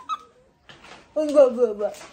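A person's voice: a brief vocal sound at the start, then about a second in a short utterance that falls in pitch.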